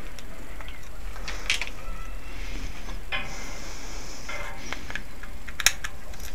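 Rustling and scattered clicks from a small camera being handled and moved, over a steady low hum, with one sharp click near the end.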